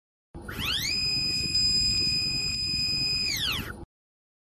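Synthesised logo-intro sound effect: a bright electronic tone sweeps up, holds steady for about three seconds over a low rumble, then sweeps back down and cuts off just before the end.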